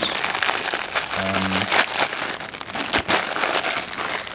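Clear plastic packaging bag crinkling and rustling steadily as it is handled and opened, with a short hummed voice sound a little past a second in.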